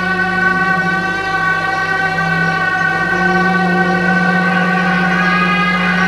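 Tibetan monastery ritual wind instruments sounding one long, steady, reedy droning note that wavers slightly in pitch.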